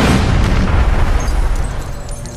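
Film sound effects of a heavy crash: a loud, deep rumbling impact with scattering debris as a large dragon slams onto a rocky cave floor, dying away near the end.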